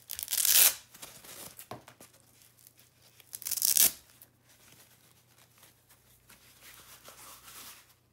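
Hook-and-loop (Velcro) wrist strap of a leather weightlifting glove pulled open with a ripping tear, twice: once about half a second in and again about three and a half seconds in. Between and after the rips comes the soft rustle of the glove being handled.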